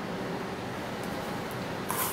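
Steady background hiss of room noise, with faint, brief rustling of a T-shirt under a hand about a second in.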